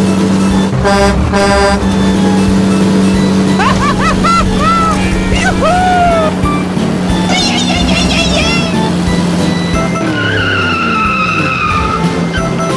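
A steady truck-engine drone, with a short horn-like toot about a second in and a run of squeaky rising-and-falling chirps and glides from about four seconds on.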